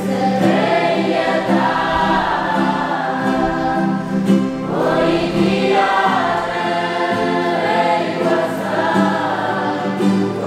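A mixed group of young voices singing a hymn together in church, with acoustic guitars playing along underneath.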